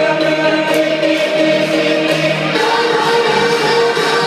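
Electronic dance music played loud over a club sound system: sustained, choir-like vocal chords with no clear beat.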